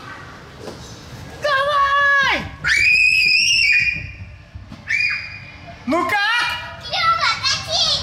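A child's voice squealing and crying out while going down an enclosed plastic tube slide, with one long high held cry about three seconds in and shorter cries after it.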